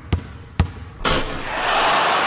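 Intro sound effect of a basketball bouncing, two dribbles about half a second apart, followed about a second in by a sudden rush of noise that swells and holds.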